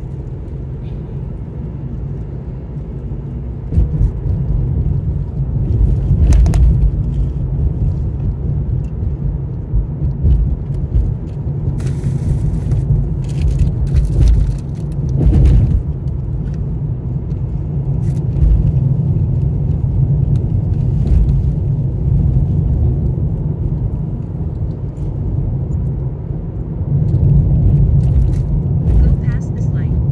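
Road noise inside a moving car: a steady low rumble of tyres and engine, with a few brief sharp knocks or clicks along the way.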